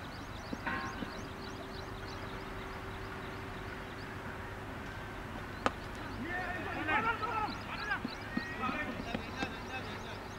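A single sharp crack of a cricket bat hitting the ball a little over halfway through, followed by several voices calling out.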